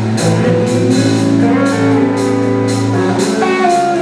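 Live blues-rock band playing an instrumental passage: electric guitars and bass guitar over a drum kit keeping a steady beat of about two strokes a second.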